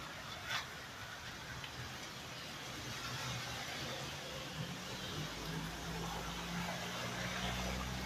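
A car's engine running close by, a low hum that builds from about three seconds in, over a steady hiss of outdoor noise; one short click about half a second in.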